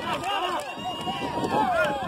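A crowd of spectators talking and calling out over one another, many voices at once with no clear words.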